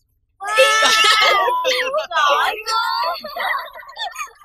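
Loud, high-pitched shrieking voices: one long cry starting about half a second in, then shorter squeals that rise and fall.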